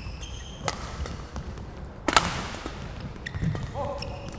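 Badminton rackets striking the shuttlecock in a rally: two sharp hits about a second and a half apart, the second the louder, with a few fainter taps over the low noise of the hall.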